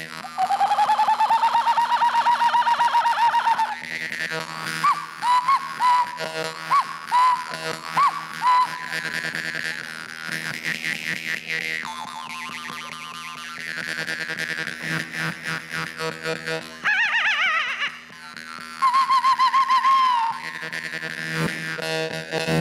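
Jaw harp played solo into a microphone: a steady low twanging drone with fast rhythmic plucking and a whistling overtone melody that slides up and changes pitch above it.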